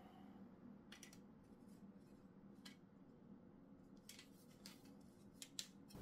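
Faint, scattered light clicks and taps, about eight of them, from small screws and a 3D-printed plastic holder being handled and fitted against a metal target face, over a low steady room hum.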